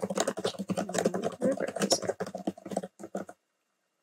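Fast typing on a computer keyboard: a quick, steady run of key clicks that stops about three seconds in.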